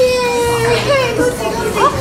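Excited voices of adults and a child: a long drawn-out vocal note at the start, then overlapping lively talk and a short rising squeal near the end.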